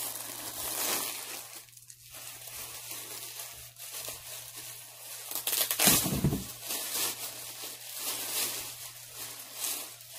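A bag of yarn being handled and opened, crinkling and rustling in irregular bursts, with a louder bump about six seconds in.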